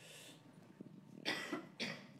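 A person's short cough a little over a second in, with a smaller second burst just after, against faint room tone.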